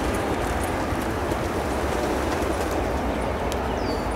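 Distant hoofbeats of a racehorse galloping on a dirt track, under a steady background rumble.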